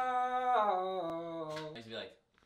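A man's voice humming one drawn-out note that falls in pitch in a few steps and stops just before the end.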